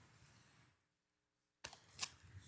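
Near silence: faint room tone that drops out completely for a moment, then a couple of sharp clicks near the end.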